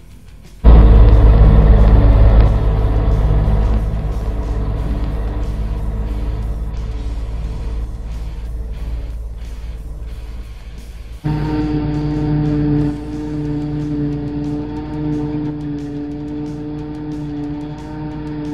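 New Holland self-propelled forage harvester running under load while chopping hay and blowing it into a wagon: a loud engine and cutterhead drone with deep rumble that starts suddenly about a second in. After an abrupt change about eleven seconds in, it becomes a steady humming whine. Background music plays faintly underneath.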